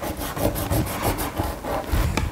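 Pencil scratching across paper taped to a wooden easel board, in quick repeated strokes.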